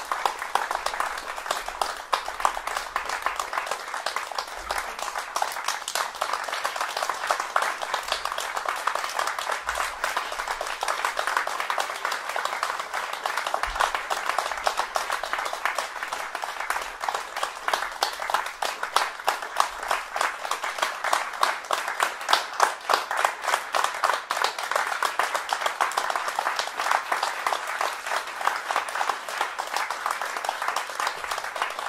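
Audience applauding, many hands clapping steadily without a break.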